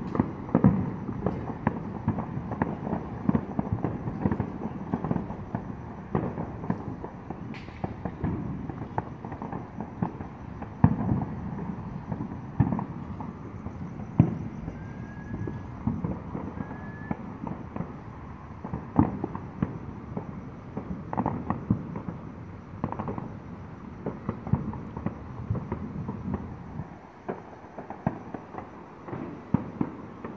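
Neighborhood fireworks and firecrackers going off without a break: a dense stream of pops and bangs, with louder single bangs standing out every few seconds. The low rumble thins out near the end.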